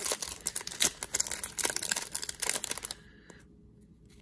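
Foil trading-card pack wrapper crinkling and tearing open in the hands, a dense crackle that stops about three seconds in.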